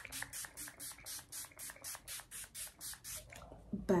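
Quick, even strokes of makeup being applied close to the face, about four a second, each a short hiss; they stop a little before the end.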